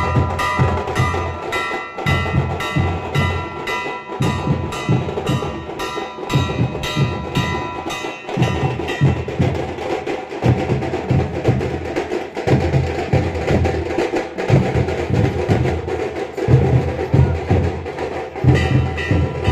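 Drums beating a fast, dense rhythm, with a large hanging metal bell struck repeatedly and ringing over them until about halfway through.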